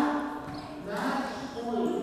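Faint, indistinct voices of players and spectators in a reverberant indoor sports hall between rallies.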